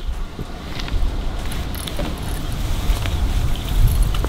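Wind buffeting the microphone, a steady low rumble, with a few faint clicks over it.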